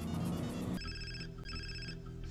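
A cell phone ringtone ringing as an incoming call. Short electronic rings repeat about every second, starting just under a second in, over music with a steady low bass.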